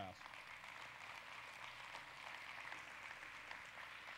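Congregation applauding steadily. It is a fairly quiet, even patter of many hands clapping.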